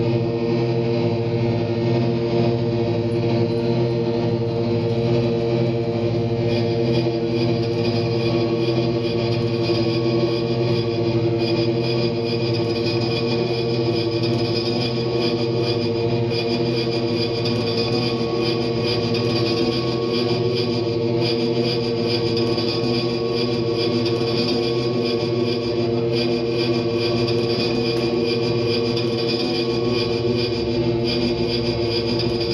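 Sustained, layered drone of an amplified instrument run through effects pedals: several steady tones held together, the loudness barely changing.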